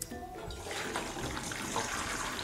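Hot noodle-cooking water and boiled noodles being poured from a pan into a perforated steel strainer over a steel bowl: a steady rush and splash of water that builds about half a second in.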